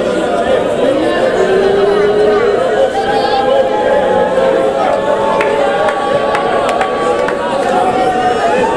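A congregation praying aloud all at once: many overlapping voices in a steady babble, with some long held musical notes underneath.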